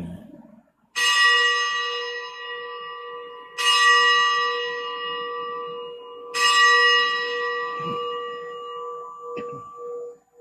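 A bell struck three times, about two and a half seconds apart, each stroke ringing on and slowly dying away. It is rung at the elevation of the chalice after the words of consecration at Mass.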